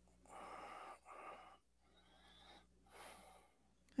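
Faint breathing of a person, about four breaths in and out, picked up on an open microphone.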